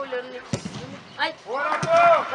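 Sharp thuds of a football being kicked on an artificial-turf pitch, followed by men shouting loudly from about halfway through.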